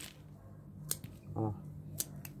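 Small scissors snipping at the roots and stems of succulent cuttings, with two sharp snips about a second apart.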